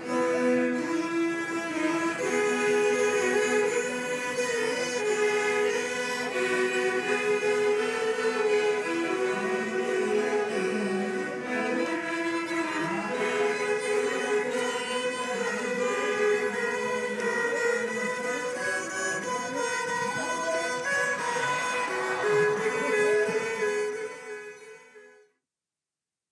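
An ensemble of Hardanger fiddles (hardingfele) playing a folk tune together, full and ringing with many sustained tones. It fades out about a second before the end.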